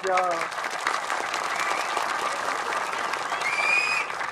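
Audience applauding: a steady patter of many hands clapping from about half a second in, with a brief high rising tone near the end.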